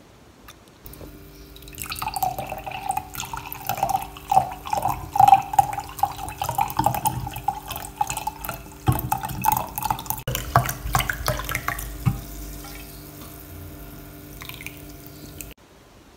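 A dark fizzy drink being poured from a bottle into a stemmed wine glass. The liquid glugs out of the bottle neck in quick pulses and fizzes in the glass, then tails off near the end.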